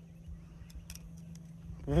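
Quiet background with a steady low hum and a few faint light clicks near the middle.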